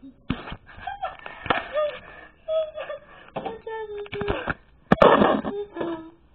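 A girl laughing in broken, gliding bursts, with a loud breathy burst of laughter about five seconds in, just after a sharp click.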